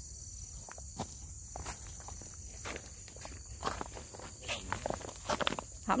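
Irregular footsteps with a few light knocks, over a steady high-pitched insect trill.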